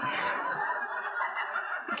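Audience laughing, a steady wash of many voices.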